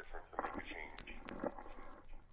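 A person's voice speaking quietly, with a few sharp clicks about a second in.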